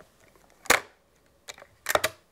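Metal clicks of a TOZ-34 over-under shotgun's two halves being clipped back together: a sharp click a little under a second in, then a light click and a louder pair of clicks near the end.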